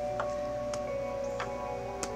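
Soft background music with held notes, and three light clicks as small crystal stones are set down on cards on a table.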